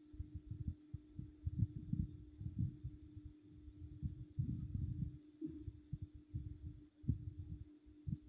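Faint, irregular low thumps and rumble, with a steady low hum underneath.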